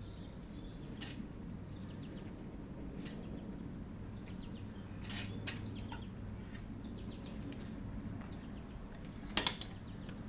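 Wheelchair rocking on aluminium rocking tracks, its metal frame and the tracks giving a few light clicks and clinks, with a sharper double clink near the end. Birds chirp faintly in the background over a low steady outdoor hum.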